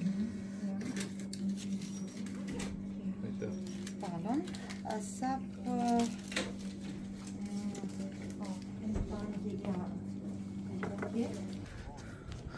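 Indistinct background voices of other people in a small shop over a steady low electrical hum; the hum cuts off near the end.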